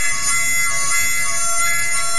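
Music: a reedy wind instrument holding a steady, sustained chord, with a new set of notes coming in right at the start.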